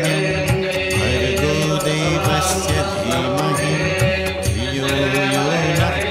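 Devotional Hindu mantra music: chanted vocal lines held and gliding over a sustained drone, with a steady beat.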